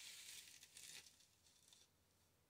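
Faint rustling of fingers pressing and smoothing yarn trim onto paper, in near silence; it dies away near the end.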